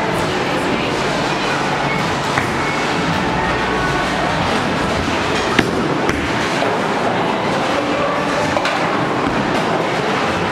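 Bowling alley din: the steady rumble of a bowling ball rolling down a wooden lane, with a sharp knock about five and a half seconds in, over background music.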